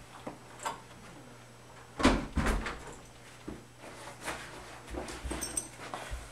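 A door being opened and footsteps in a hallway: scattered clicks and knocks, with the loudest cluster of thuds about two seconds in and a few light, high clinks near the end.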